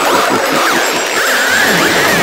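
Electronic dance track in a breakdown: a dense, chaotic wash of synth effects with fast zig-zagging pitch glides, with no kick drum or bass underneath.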